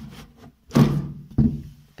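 A stiff wooden kitchen cabinet being pulled open by hand, giving two knocking thunks about three-quarters of a second apart as it sticks and gives.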